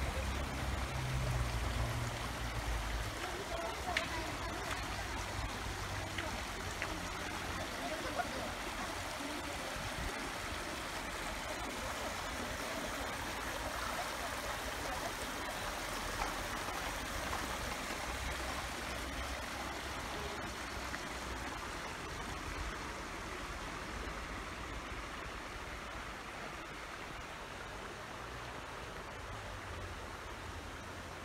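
Shallow stream running over stones and pebble bars, a steady burbling rush of water that eases a little near the end.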